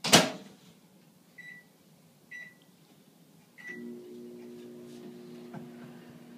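Microwave oven door shut with a bang, three short keypad beeps about a second apart, then the oven starting up and running with a steady hum.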